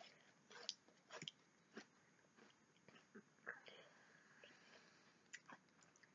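Faint, irregular crunching of crisps being chewed, a scatter of short, sharp clicks.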